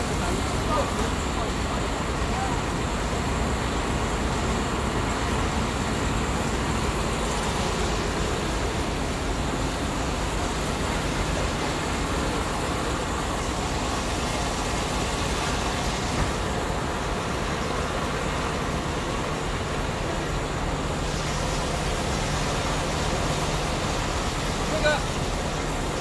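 Steady, even machine noise from an automatic quilting and bedding production line running.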